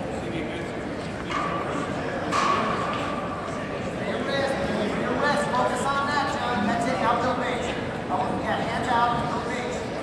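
Raised voices calling out at a wrestling match, thickest from about four seconds in, over a steady background of crowd noise.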